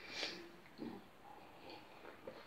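A short nasal breath or snort about a quarter second in, then faint sounds of a person sipping wine from a glass held at the mouth. The rest is quiet.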